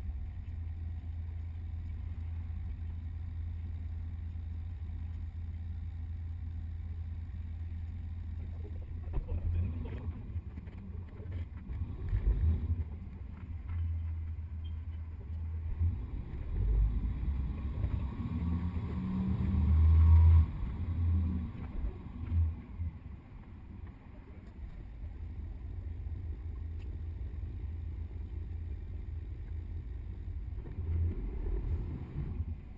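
Double-decker tour bus driving in city traffic: a steady low engine drone and road noise. It grows louder and uneven in the middle as the bus turns and pulls away, then settles back to a steady drone.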